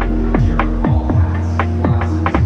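Background music: an electronic track with sustained low bass notes and quick falling-pitch blips repeating a few times a second.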